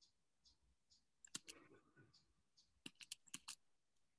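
Computer keyboard keys being typed, heard faintly over otherwise near silence: two clicks about a second and a half in, then a quick run of about five near the end. A faint, even ticking recurs about two to three times a second underneath.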